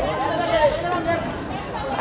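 Several voices talking and calling over one another in a steady babble, with a brief hiss about half a second in.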